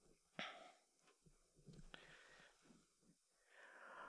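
Near silence: faint room tone, with one brief soft noise about half a second in.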